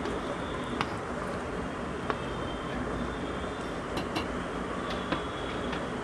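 A few light, scattered clicks and taps as chopped coriander, green chilli and ginger are tipped from a plastic cutting board into a stainless-steel mixer-grinder jar, over a steady background hiss.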